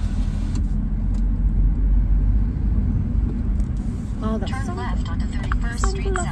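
Low, steady rumble of a car's road and engine noise heard from inside the moving cabin. A voice talks over it in the last two seconds.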